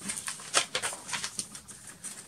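Sheet of paper being handled: a few short crackles and taps as a photo print is turned over and pressed flat against a board.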